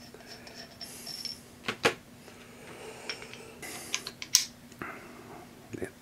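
Light metallic clicks and clinks of steel milling tooling being handled: a bolt being unscrewed from an R8 shell-mill arbor and the shell mill being seated on it. The sharpest clicks come a little under two seconds in and around four seconds in, with a brief rustle of packaging.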